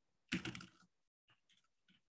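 Typing on a computer keyboard: a quick run of keystrokes about half a second in, then a few lighter, scattered taps.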